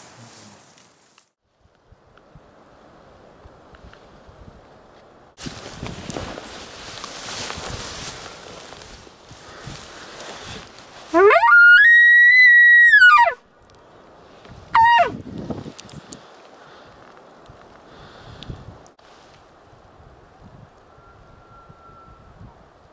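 A maral stag's bugle. A whistle climbs steeply to a high held note for about two seconds, then drops away, and a second, shorter call falls off a couple of seconds later. It is the rutting call of the Altai wapiti.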